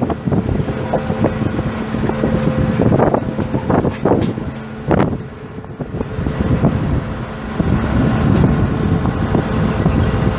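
John Deere 8820 Turbo combine's six-cylinder diesel engine running steadily, with a brief dip in loudness about five seconds in.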